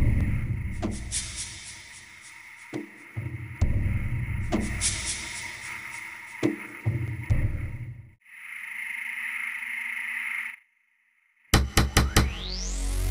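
Dramatic film background score: deep booming swells that rise and fade three times, with sharp hits between them and a high shimmer. A steady hiss follows, then a second of silence, then a quick run of sharp hits near the end.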